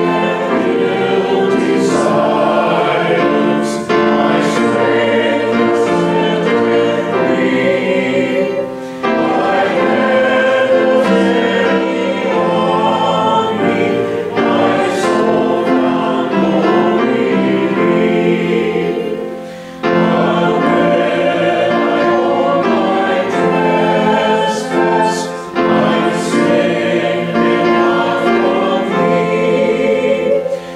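Congregation singing a hymn together, with short breaks between sung lines about 9 and 20 seconds in.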